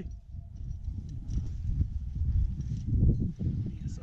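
Low, uneven rumble of wind buffeting a body-mounted camera's microphone, with scattered light knocks and rustles from climbing rope and gear being handled.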